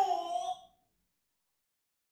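A single short pitched call, under a second long, at the start, falling slightly in pitch as it ends.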